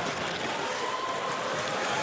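Steady noise of an ice hockey arena crowd during play, with a faint steady tone running through it from about half a second in.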